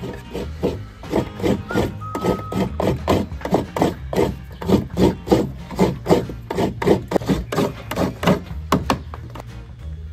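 Coconut being grated by hand: a run of sharp rasping, scraping strokes, about two or three a second, over background music.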